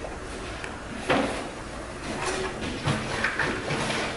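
A door being handled as someone goes through it, with one sharp knock about a second in.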